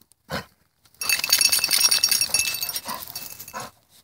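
Metal jingling over a rustling noise for about two and a half seconds, starting about a second in: a retrieving dog's tags and vest hardware rattling as the wet dog moves on the bank beside its goose.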